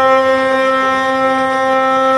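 Russian wheel lyre (hurdy-gurdy) sounding a steady drone: one low note held with its octave, with no tune moving over it.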